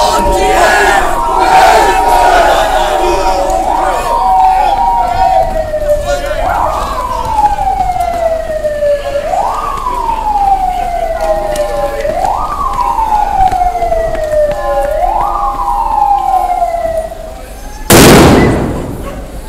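Police vehicle siren wailing: each cycle rises quickly in pitch and falls slowly, repeating about every three seconds. Crowd noise from a street crowd underlies the first few seconds.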